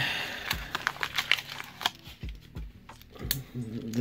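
Paper coin-roll wrapper crinkling as it is peeled off a stack of Australian 50-cent coins, followed by several light clicks of the cupronickel coins knocking against each other as the stack is handled.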